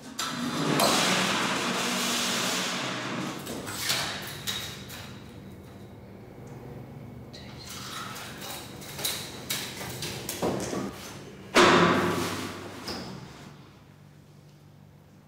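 A metal bed frame dragged scraping across the floor, then scattered knocks and clatter, and a loud sudden thud near the end that dies away over a second or two as a body drops onto the metal bed.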